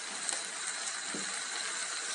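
Food sizzling on a paper-lined barbecue grill plate: a steady, even fizzing hiss.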